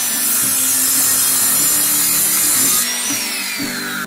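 Compact electric miter saw cutting through a small block of pallet wood, the blade at full speed through the cut. Near the end the cut is done and the motor's whine falls in pitch as the blade spins down.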